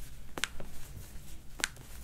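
Two sharp pops about a second apart: toe joints cracking as they are pulled by hand during a chiropractic toe adjustment.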